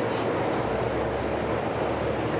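Steady city street traffic noise, with a low rumble that comes in about half a second in, as of a heavy vehicle passing.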